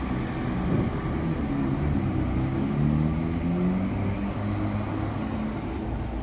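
Intercity coach's diesel engine pulling away under load, its pitch rising over the first few seconds and then levelling off as the bus moves past.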